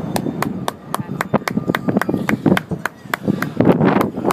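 Spray from a large lake fountain show falling back onto the water, with a rapid, even ticking of about four a second running through it.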